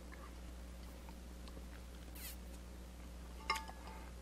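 Quiet room tone with a steady low electrical hum, and a few faint clicks about three and a half seconds in.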